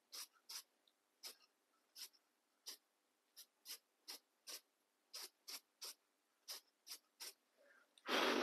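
Aerosol can of matte clear acrylic coating sprayed in short, quick puffs, about two a second, each a brief faint hiss, laying a light even coat.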